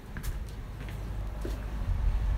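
Low steady rumble aboard a boat, with a couple of faint knocks.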